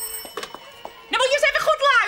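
A few clicks as a telephone receiver is handled. Then, about a second in, a woman's loud, high, wavering shriek into the receiver, lasting about a second, meant to scare off a heavy-breathing caller.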